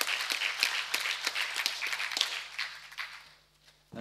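Audience applauding, the clapping dying away about three and a half seconds in.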